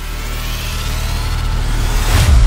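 Logo-intro sound effect: a building whoosh over a deep, sustained rumble that grows steadily louder, like a revving riser leading into a hit.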